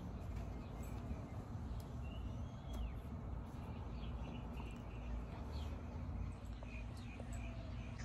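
Quiet outdoor background: a steady low rumble with a few faint bird chirps.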